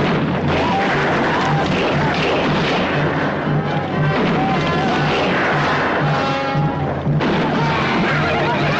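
Dramatic orchestral film score over a gunfight, with booms and crashes of gunfire mixed in.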